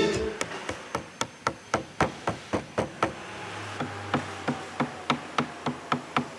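Light, regular tapping, about four strikes a second, with a short pause a little past the middle, as from hand work on a workpiece.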